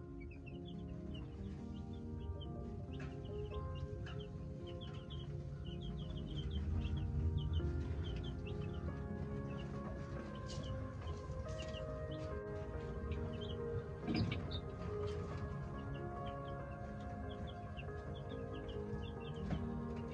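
Baby chicks peeping over and over in short high chirps, over soft background music with long held notes. One brief knock stands out about two-thirds of the way through.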